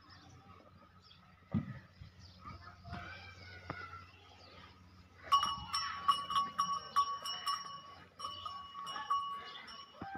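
A high-pitched animal call repeated in short pulses at one steady pitch, starting about halfway through and running until just before the end, after a couple of soft knocks earlier on.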